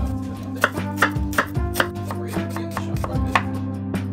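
A chef's knife dicing a red onion on a wooden cutting board: a series of sharp, irregular knocks of the blade on the board, over background music.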